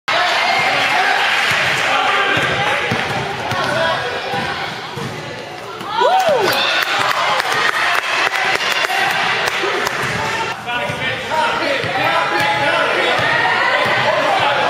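A basketball being dribbled and bounced on a hardwood gym floor, a string of short knocks echoing in the hall, over the chatter of spectators. A short squeal rises and falls about six seconds in, the loudest moment.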